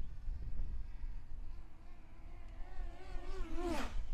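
DJI Mini 3 Pro drone's propellers whining as it flies in toward the pilot in Sport mode, heard from about a second in, wavering in pitch, growing louder and dipping sharply in pitch near the end. A low steady rumble lies underneath.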